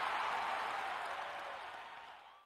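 Crowd applauding and cheering, heard as a steady wash of noise that gradually fades out.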